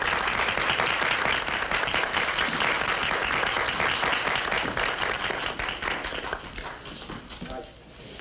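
Audience applauding steadily, the clapping fading away over the last two seconds or so.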